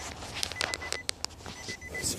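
Scattered light clicks and knocks of handling, about seven in two seconds, over a faint steady high electronic tone.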